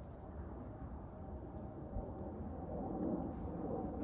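Quiet open-air ambience with a steady low rumble of wind on the microphone and no distinct event.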